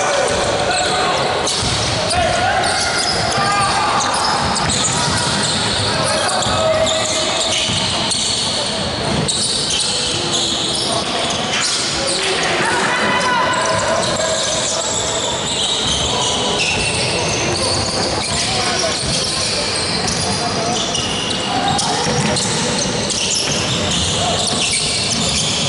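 Indoor basketball game: a ball bouncing on the wooden court amid players' and spectators' shouting, echoing in the gym.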